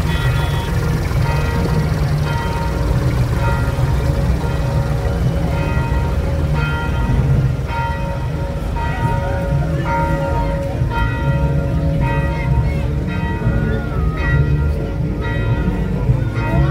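Bell-like music: clear ringing tones, struck again and again in a loose rhythm, over a heavy steady low rumble.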